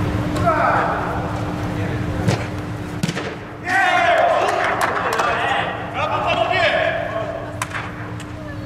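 Players' voices shouting and cheering after a goal, loudest from about halfway through, with a few sharp thuds of a football being struck, over a steady low hum.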